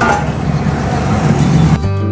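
Roadside traffic noise with a low vehicle rumble, cut off abruptly near the end by background music with steady held notes.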